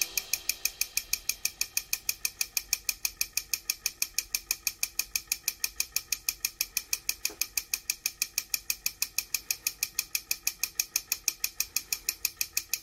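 Miniature model air compressor running, its belt-driven mechanism clicking steadily at about six clicks a second.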